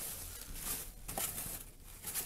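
Clear plastic packaging and bubble wrap crinkling and rustling as items are pulled about in a cardboard box, with a few small knocks.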